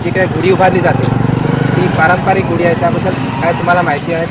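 Men talking in Marathi, one voice leading, with a low rumble underneath during the first half.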